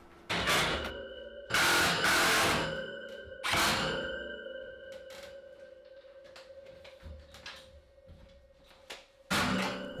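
Steel wire storage shelf clanking and scraping as it is shifted by hand, with two loud rattles in the first four seconds, followed by a long, slowly fading metallic ring.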